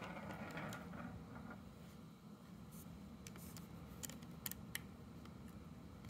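Faint handling noise: a soft rustle, then a handful of light, sharp clicks from about halfway through, as the plastic drone landing-gear leg is picked up and a small jeweller's screwdriver is set into one of its screws.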